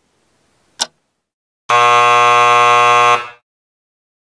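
A countdown timer ticks once, then a loud electronic buzzer sounds for about a second and a half as the countdown runs out: the time's-up signal between bingo calls.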